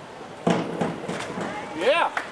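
A springboard diver hits the water with a sudden splash about half a second in. High rising shouts and cheers from onlookers follow near the end.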